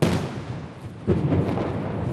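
Ceremonial salute guns firing, two booms about a second apart, each dying away in a long echo.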